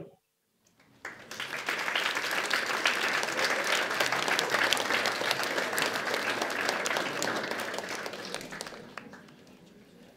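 Audience applauding: the clapping starts about a second in, holds steady, then fades away near the end.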